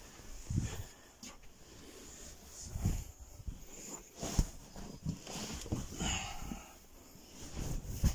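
Seat cushions and bedding being handled as a pull-out van sofa is laid flat into a double bed: rustling fabric with irregular soft thumps and knocks, one sharper knock about four seconds in.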